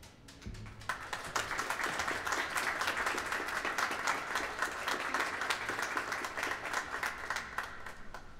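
Audience applauding: many hands clapping, building about a second in, holding steady, then stopping near the end.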